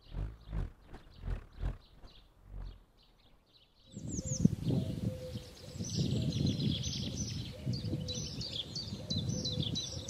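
Small birds chirping: a run of short, quickly repeated falling chirps starting about four seconds in. Beneath them is a louder low rumbling noise, and before the birds come in there are five or six soft low thumps.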